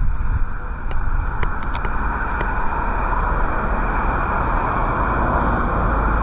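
Strong wind buffeting the microphone, a steady heavy rumble under a constant rushing hiss, with a few faint clicks between one and two and a half seconds in.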